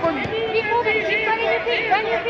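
Overlapping voices of onlookers and coaches talking and calling out in a large hall, none of it clear speech.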